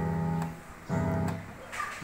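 Two low chords played on an electronic keyboard in its bass register, each held about half a second. This low, the chords sound cracked and unpleasant.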